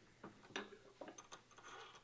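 Faint, scattered small metal clicks and taps as a keyed drill chuck and its tool are handled: the released form tap is drawn out of the opened chuck, with a soft light rattle near the end.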